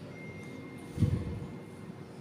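A single dull, low thud about a second in, dying away over about half a second, over a steady low hum, with a faint thin high tone running underneath.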